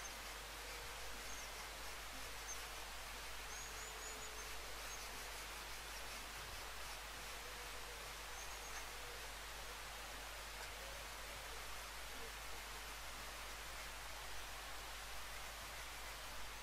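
Faint, steady outdoor background hiss with a few faint, high bird chirps in the first half and a low steady hum underneath.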